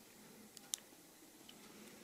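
A single sharp click about three quarters of a second in, with a fainter tick or two, from a button being pressed on a Zoom H2n handheld recorder to step back through its menu; otherwise near silence.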